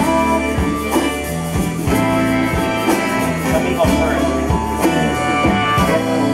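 Live band playing an instrumental passage with a steady drum beat, bass, guitars and saxophone.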